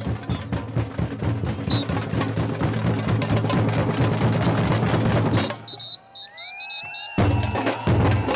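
Fast street-band percussion, samba-style drums and hand percussion, led by a whistle. About five and a half seconds in, the drums stop on a few short whistle blasts, leaving a gap of about a second and a half, and then all the drums come back in together.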